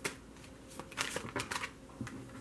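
A Vice Versa tarot deck being shuffled by hand: a series of short, sharp card snaps, most of them bunched together in the second half.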